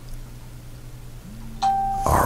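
A steady single-pitched electronic tone, like a beep or chime, starts suddenly about one and a half seconds in, over a low steady hum.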